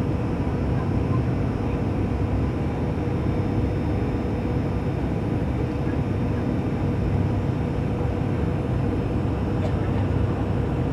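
Airliner cabin noise in flight: the steady drone of the engines and rushing air, with a faint constant hum running through it.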